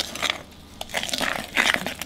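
Metal spoon stirring milk into flour and sugar in a glass mixing bowl: a few wet scraping swishes with light clicks of the spoon against the glass.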